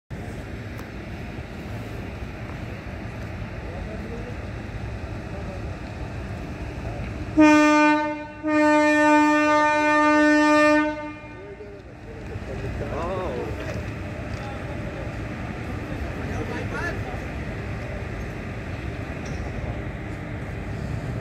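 A train's locomotive horn sounds twice about halfway through, a short blast then a longer one of about two and a half seconds, over the steady low rumble of a slowly moving train.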